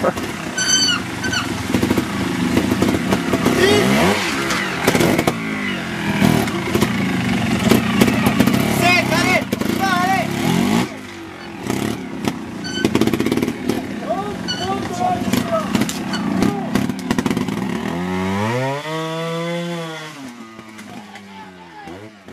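Trials motorcycle engine blipped and revved in short bursts as the rider works the bike over rocks. A longer rev near the end rises and then falls in pitch before dying away. People are talking and laughing over it.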